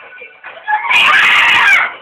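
A girl's loud, high-pitched scream, starting just under a second in and lasting about a second, so loud it distorts.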